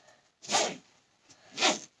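Bag zipper pulled in two short strokes, about half a second in and again near the end, as a school bag is zipped shut after packing.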